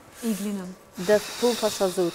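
Voices chanting the same short syllables over and over in a steady rhythm, joined about halfway through by a drawn-out, high hiss like a long "sss" sound.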